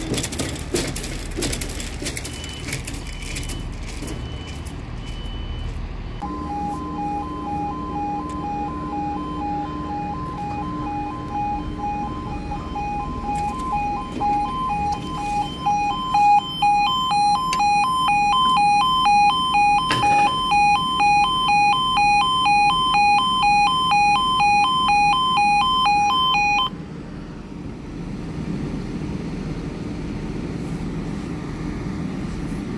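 Level crossing warning alarm sounding a rapid pulsing two-tone warble. It starts about six seconds in, grows louder about halfway through while the barrier booms lower, and cuts off suddenly a few seconds before the end. After that comes the low rumble of an approaching train.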